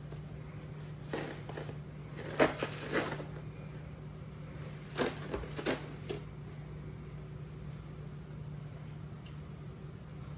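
Wooden spoon scraping and knocking against disposable aluminium foil pans as thick cake batter is spread into the corners, a few short scrapes and clicks in the first six seconds. A steady low hum runs underneath.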